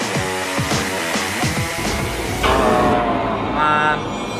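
Tense electronic game-show music with a fast repeating pattern, which about two and a half seconds in gives way to louder, slightly wavering electronic tones and then a short bright buzzer-like tone near the end: the cube's failure cue as the attempt is lost.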